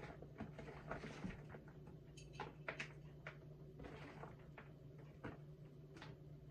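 Sliced vegetables being handled and packed into a glass jar by hand: soft, irregular rustles and light clicks, over a low steady hum.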